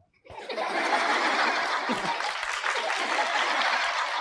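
Studio audience applauding, a steady even clapping that starts about a third of a second in after a moment of silence.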